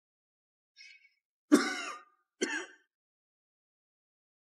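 A man clears his throat with a cough twice, a second and a half in and again about a second later, the second shorter; the feverish man is falling ill with the plague.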